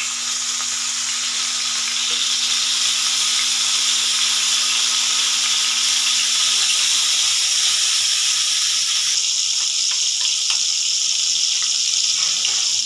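Stuffed baby eggplants frying in hot oil in a nonstick pan: a loud, steady sizzle that thins slightly about nine seconds in.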